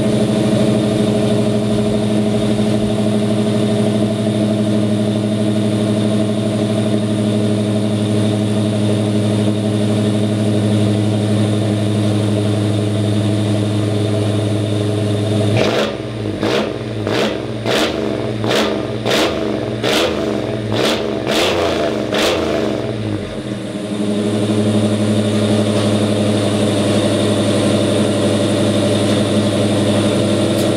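1986 Chevrolet Caprice engine idling loud and steady through a straight-piped cat-back exhaust. About halfway through it is revved in a quick series of about ten throttle blips over some eight seconds, then it settles back to idle.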